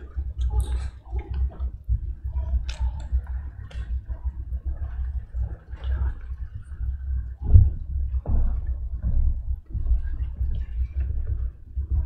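Low steady rumble of room noise picked up by the church microphones, with faint scattered clicks and rustles and one louder thump about seven and a half seconds in, as a reader walks up to the lectern with papers.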